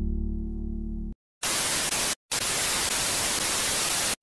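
The last held chord of the song fades out. After a brief silence, a loud burst of television static hiss begins about a second and a half in, cutting out once for a moment: a TV-glitch transition effect.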